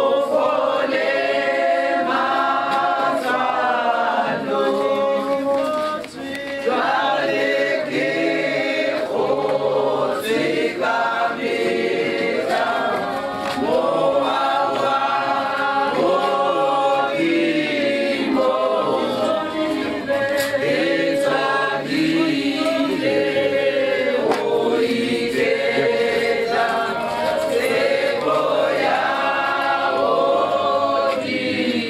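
A group of voices singing a hymn together in chorus, unaccompanied, with a brief break about six seconds in.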